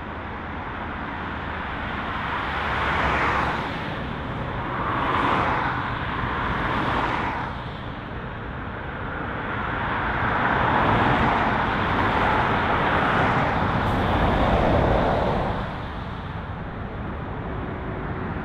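British Airways Boeing 777-300's twin turbofan engines on final approach with landing gear down: a rushing jet roar that swells and fades in waves, loudest for several seconds in the second half, then drops off sharply a couple of seconds before the end.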